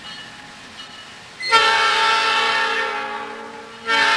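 Multi-note air horn of the Katy RS3M #142 diesel locomotive sounding a chord: one long blast from about a second and a half in, easing off slightly toward its end, then a short blast starting just before the end.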